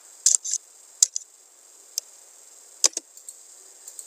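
Computer keyboard keys being typed and a mouse button being clicked: about half a dozen short, sharp clicks, scattered irregularly, some in quick pairs.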